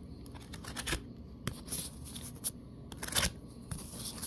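Tarot cards being laid down one after another on a wooden tabletop: a string of light, irregular card taps and slides.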